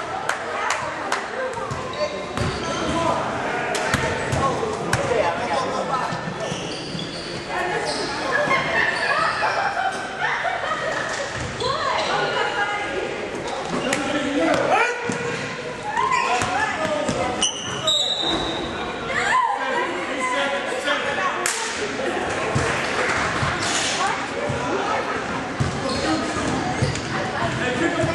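Basketball bouncing on a hardwood gym floor during play, with repeated short impacts through the stretch. Indistinct voices of players and onlookers run underneath, all echoing in a large gym.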